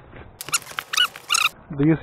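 Dog whining: about four short, high-pitched whines in quick succession, each bending in pitch.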